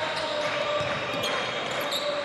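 A basketball bouncing on a hardwood court over steady arena noise during live play.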